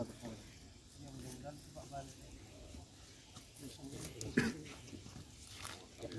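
Mostly quiet, with faint scattered voices and one short, louder sound a little past four seconds in.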